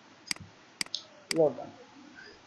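Three sharp computer mouse clicks, about half a second apart.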